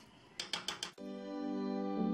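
A few quick clicks of a metal spoon knocking against a pot of beans, then background music comes in about halfway with held chords.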